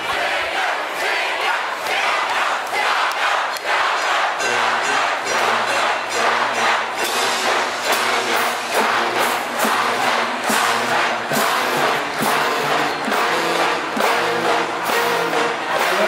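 School pep band playing in a gymnasium, drums keeping a steady beat and brass holding notes, over a crowd of students yelling and cheering.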